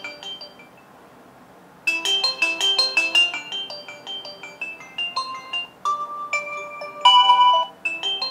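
A Xiaomi Redmi 5a's loudspeaker playing a bright, marimba-like ringtone melody. It stops about half a second in and starts again just under two seconds in, with longer, louder notes near the end. After its water dunk, the phone's speaker is still working.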